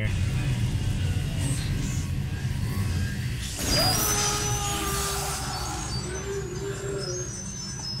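Cartoon soundtrack of electrical crackling over a heavy low droning hum as lightning plays across the screen, joined a little before halfway by thin, shrill whining tones; a sound called awful.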